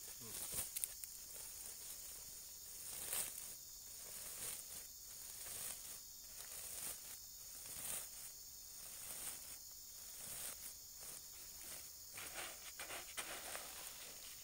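Woven plastic fertilizer sack rustling and crinkling as it is handled and opened, in short scratchy strokes, over a steady high-pitched insect drone.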